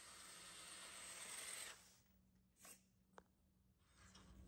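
Near silence: a faint hiss that cuts off a little under two seconds in, then dead silence broken by two tiny blips.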